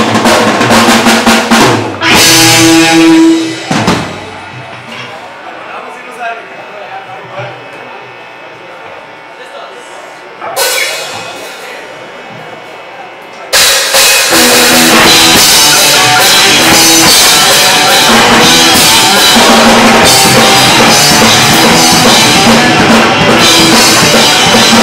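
Live punk band with electric guitars, bass and drum kit: loud bursts of guitar and drums in the first few seconds, a quieter lull, then about fourteen seconds in the full band starts playing at full volume and keeps going.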